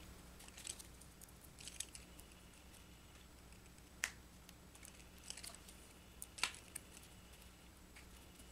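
Faint, scattered clicks and taps of paper flowers and a pick tool being handled and pressed onto a cardstock card, the sharpest about four seconds in, over a low steady hum.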